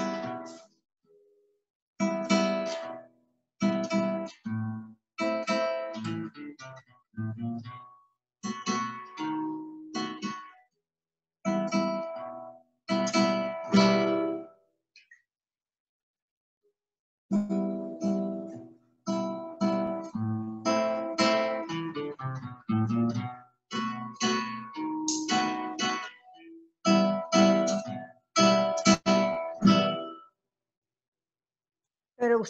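Nylon-string classical guitar playing plucked bass notes alternating with strummed chords in A minor. The playing comes in short phrases, each stroke dropping abruptly to silence, with a pause of about two seconds halfway through.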